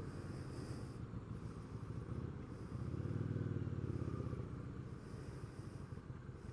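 Kawasaki VN800 Drifter's V-twin engine running at low revs with a pulsing rumble, a little louder for a second or two around three to four seconds in as the bike creeps along in queuing traffic.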